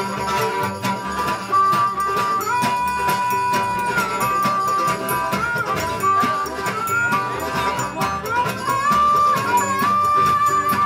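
Live acoustic string band playing a folk tune: acoustic guitar and upright bass keep a steady picked rhythm. Over it, a harmonica plays long held notes that slide and bend between pitches.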